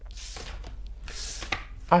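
A tarot deck being shuffled by hand: two short bursts of papery card rustling, about a second apart.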